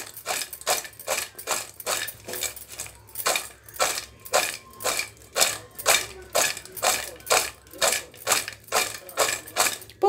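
A metal spoon stirring fried corn kernels in a stainless steel bowl: rhythmic scraping clinks against the metal, about two to three a second.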